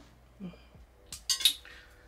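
Metal tweezers set down on a hard surface: a short, sharp cluster of metallic clinks about a second and a half in.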